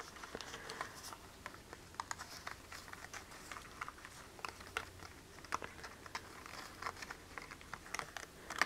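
Faint, scattered small clicks and paper rustling as die-cut letters are pressed out of a sheet of watercolor paper.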